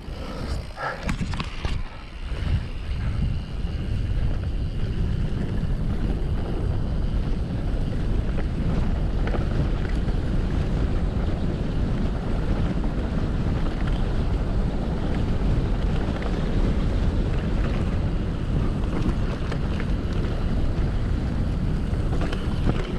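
Wind rushing over an action camera's microphone as a mountain bike rolls fast down a grassy moorland trail, a steady low rumble. There is a short laugh at the very start.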